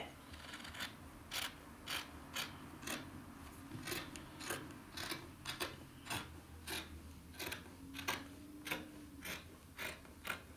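Scissors snipping through cotton fabric in a steady run of cuts, about two snips a second.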